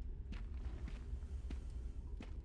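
Footsteps of the cartoon's characters walking, a few soft steps about half a second apart, over a low steady ambient rumble.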